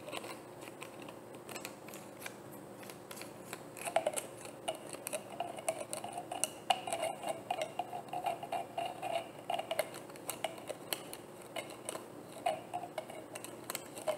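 Long fingernails tapping and clicking on an empty plastic bottle, a quick irregular run of light taps that gets busier from about four to ten seconds in.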